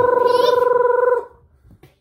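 One long, steady high note from a voice, held and then stopping a little after a second in.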